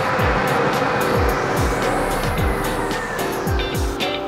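Lottery ball machine churning its balls: a dense rushing, clattering noise that eases off in the second half. Background music with a steady drum beat plays under it.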